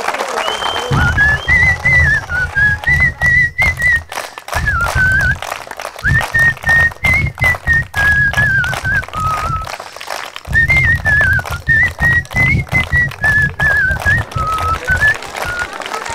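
A man whistling a tune in a high, wavering line, phrase after phrase, with hand claps and a low beat going along underneath.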